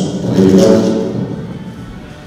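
A man's voice speaking into a lectern microphone: one phrase with drawn-out vowels, loudest in the first second and fading away over the second half.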